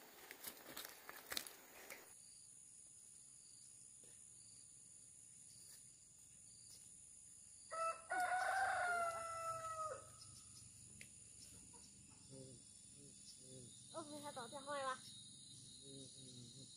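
A rooster crows once, a call of about two seconds that is the loudest sound here, over a steady high insect drone. Before that, footsteps on a stony path fill the first two seconds, and a few short, quick calls come near the end.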